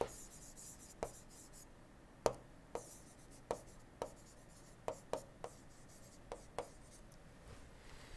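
Stylus writing on a tablet screen: about a dozen faint, sharp taps at irregular intervals, with brief scratchy strokes between some of them.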